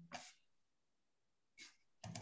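Near silence: room tone, with two faint short noises, one just after the start and one near the end.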